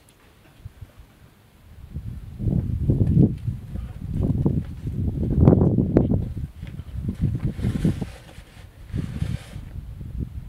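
Wind buffeting the microphone: a low, irregular rumble that starts about two seconds in and comes and goes in surges.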